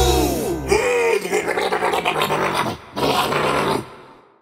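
Cartoon sound effects for a waking bear as a children's song ends: a sliding, falling tone, a wavering call, then a rough, scratchy growl-like sound that stops suddenly just before the end.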